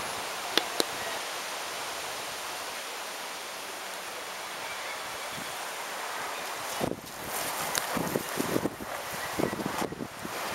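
A steady, even hiss with two faint clicks near the start. About seven seconds in it drops and gives way to scattered light knocks and rustling.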